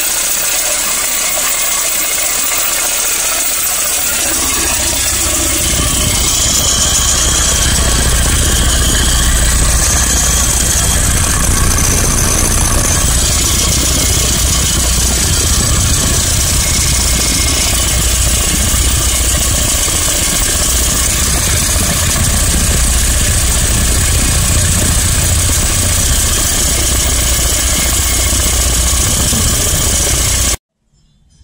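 Vibrating mini ball mill running: a steady low hum from its vibrator motor under the dense rattle of manganese steel balls grinding dry quartz tailings inside the steel drum. The low hum grows stronger about four seconds in, then holds steady.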